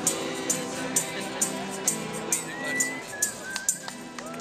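Live keyboard and acoustic guitar music closing out a song, with a steady high tap about twice a second. The held chord dies away near the end, and a short whistled note sounds about two and a half seconds in.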